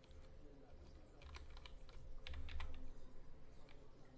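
Computer keyboard keys pressed in two quick clusters of clicks, about a second in and again past the middle, each with a dull thud from the desk.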